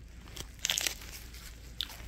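A cough-drop wrapper crinkling in the hand, a few short crinkles about half a second in and again near the end.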